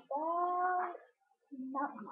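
A drawn-out wordless vocal call held on one steady pitch for about a second, followed by a shorter, lower call near the end.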